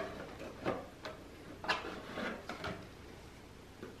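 Cardboard gift box and packaging being handled: a few scattered light knocks and rustles as a small boxed gift is lifted out.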